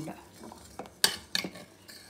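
Steel spatula stirring a thick liquid in a steel saucepan, scraping and clinking against the pan's side, with a few sharp clinks, the loudest about a second in.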